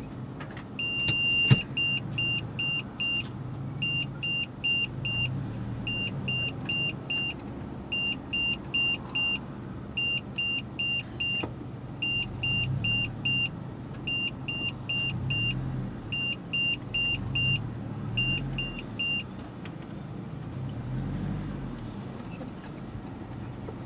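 Car's in-cabin warning chime: one longer high beep, then short beeps in quick groups of four about every two seconds, stopping near the end. Under it is the low hum of the car's engine running, and a sharp click comes just after the first beep.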